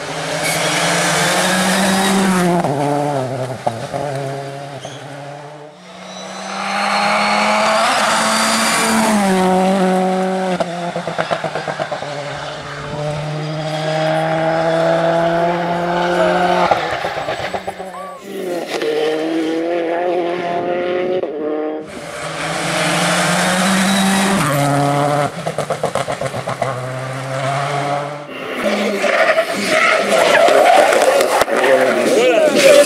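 Rally cars passing at speed in a run of separate passes, each engine at high revs with its pitch stepping down and back up through gear changes, with some tyre noise.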